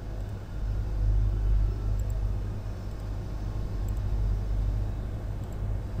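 Steady low rumble and hum of background noise with no clear event.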